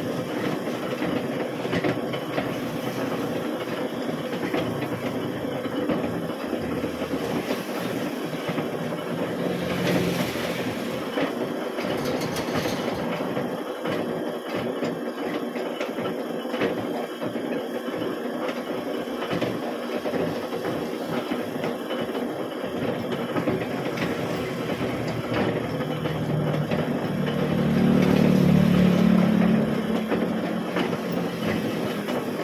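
Metal-cutting machine tool slotting internal gear teeth with a reciprocating cutter bar, running with a steady, repetitive mechanical clatter. It grows louder for a few seconds near the end.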